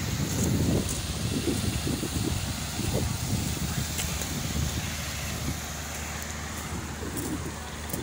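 Uneven low rumble of wind buffeting the microphone outdoors.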